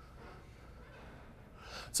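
Faint room tone in a pause between sentences, ending with a man's quick in-breath just before he speaks again.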